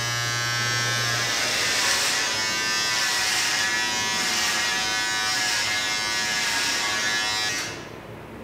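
Electric beard trimmer buzzing steadily as it shaves off a beard, cutting off abruptly near the end.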